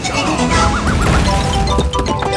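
Gonzo's Quest slot game sound effects in the free-falls feature: winning stone symbol blocks smash into rubble and the blocks above tumble down, a dense crashing rumble over the game's music, marking a cascading win.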